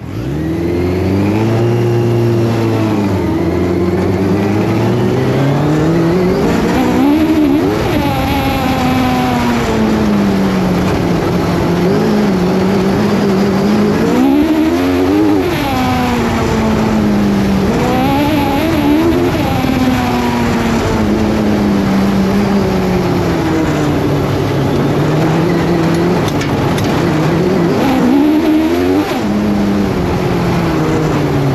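Crosskart engine heard close up from an onboard camera, its pitch repeatedly climbing and dropping as the kart accelerates and slows through the turns of a grass and dirt track.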